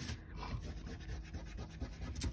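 Pencil-top rubber eraser rubbing quickly back and forth on cardstock, erasing pencil lines: a quiet, scratchy rubbing.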